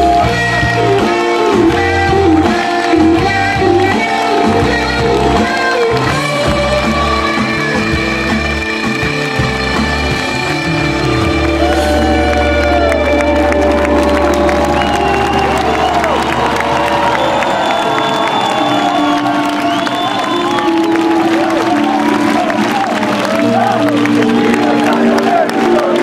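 Live band playing an instrumental passage, with the crowd cheering and whooping over it. The driving rhythm gives way about halfway through to a held low bass note, and the low end drops away for the last few seconds.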